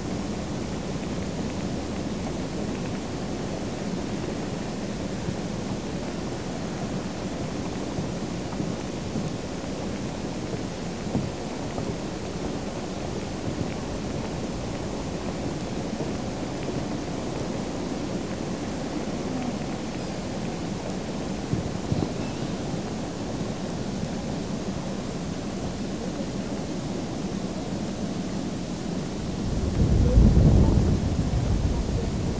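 Steady low rushing of wind buffeting the camcorder's microphone, growing louder right at the end.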